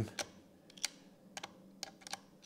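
About five faint, irregular clicks: a screwdriver bit turning and catching in a security Torx screw set in a plastic tape-measure casing.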